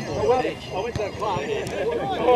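Indistinct voices talking casually, with a couple of faint knocks in between.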